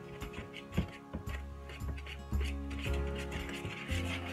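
Background music, with irregular clicks and scrapes of a utensil knocking against a mixing bowl as pizzelle batter is stirred by hand.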